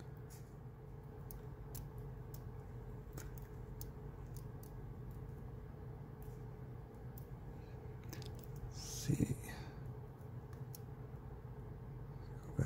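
Faint, scattered small clicks of a dimple pick and tension tool working the pins inside a brass Abus EC75 dimple padlock, over a steady low hum. About nine seconds in comes one short, louder sound, most likely a brief breath or murmur.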